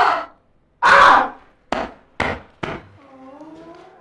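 A loud burst of noise about a second in, then three short sharp knocks about half a second apart, followed by faint wavering tones.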